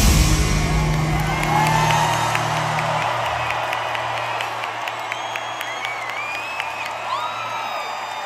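The song's final sustained low chord from the band dying away after the beat stops, while a large arena crowd cheers, whoops and whistles, the cheering taking over as the music fades.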